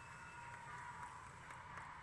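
Very quiet room tone: a faint steady hum with a thin, even high tone and a few soft ticks.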